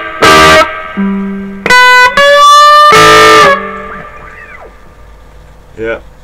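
Indie Guitar Company Les Paul-style electric guitar played loud through an amplifier: a quick chord hit, a held lower note, then another chord struck and left ringing for about a second and a half before it fades away.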